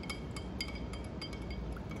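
A spoon stirring milk and chocolate syrup in a drinking glass, clinking against the glass in an irregular run of light, briefly ringing clinks.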